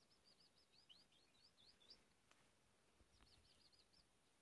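A small bird singing faintly: a rapid run of high chirping notes for about two seconds, then a second, shorter run near the end.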